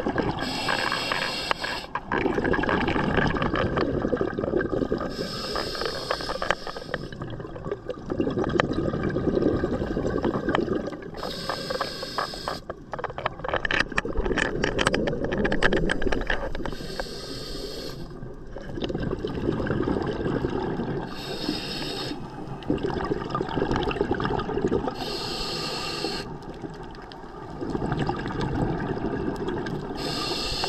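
Scuba diver breathing through a regulator underwater: a short hissing inhale every four to five seconds, each followed by a longer bubbling exhale.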